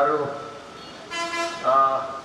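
A short vehicle horn toot about a second in, one steady note lasting under half a second, heard between phrases of a man speaking through a microphone.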